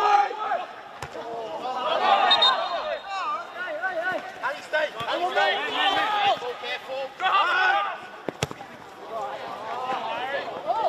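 Footballers shouting and calling to one another on the pitch, several voices overlapping, with sharp ball kicks about a second in, about halfway through and once more near the end.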